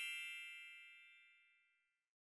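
A single bright, bell-like chime sound effect, struck just before and ringing out, fading away over about two seconds.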